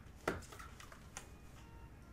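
Handling noise from headphones and their cable: a soft knock about a quarter of a second in, then a lighter click about a second in, over quiet room tone.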